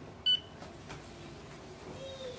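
Canon Pixma TR8600 printer's touchscreen control panel giving one short, high beep as its settings icon is tapped, confirming the touch.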